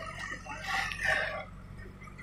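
A rooster crowing once, a high call lasting about a second, over the steady low running of a JCB backhoe loader's diesel engine.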